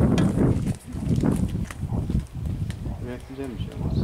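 Indistinct talk by nearby voices, with scattered short knocks and rustles.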